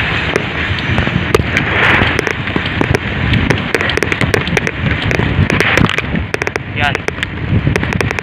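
Wind buffeting a handheld phone microphone on a moving bicycle, a dense rumble with frequent sharp crackles and clicks throughout.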